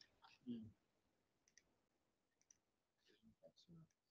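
Near silence with a few faint clicks and some soft, brief low sounds.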